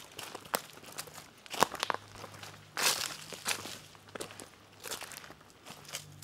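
Footsteps of hikers walking on a dirt forest trail, an uneven step about every second.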